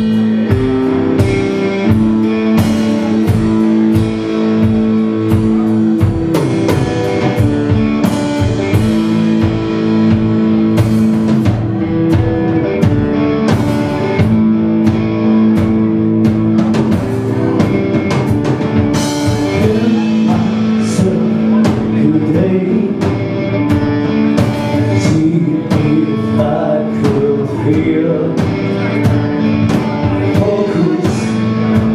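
Live rock band playing: electric guitar notes ringing over bass and drums, with a voice singing.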